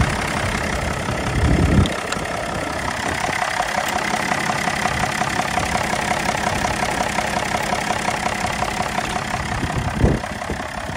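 BMW X5 E53's 3.0-litre straight-six diesel engine idling steadily with an even, rapid pulsing. A brief low rumble comes about a second and a half in, and a short thump comes at the very end.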